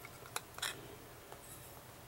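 Two brief soft clicks in the first second, then a fainter one, from hands handling a trading card in its plastic top loader.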